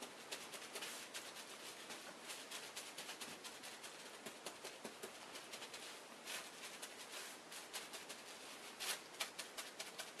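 Fingers patting and pressing a soap-soaked wool-fibre heart on bubble wrap: faint, quick, soft wet crackling and squishing. This is the wet-felting stage, where gentle patting makes the loose wool fibres begin to cling together.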